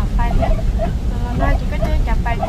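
People talking inside a moving car's cabin, over the steady low rumble of the car driving.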